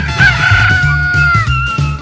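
A rooster crowing once, a single long call of about a second and a half, over background music with a steady bass beat.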